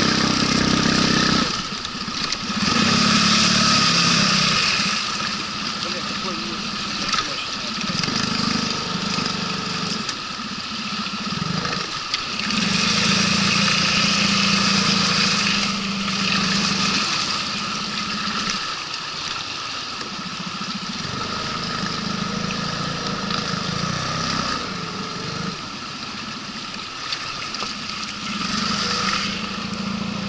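Outboard motor with a water-jet unit driving an inflatable boat upstream over shallow riffles, its engine note swelling and easing every few seconds as the throttle is worked, over the rush of water.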